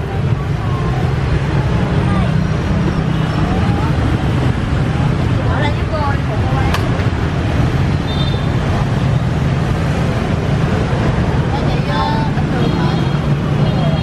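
Steady low rumble of busy road traffic, with faint voices in the background and one sharp click about seven seconds in.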